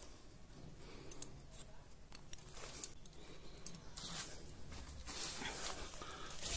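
Faint rustle of plastic grafting tape being cut and pulled off a mango branch, with a few light clicks from the scissors, two of them sharper about three seconds in.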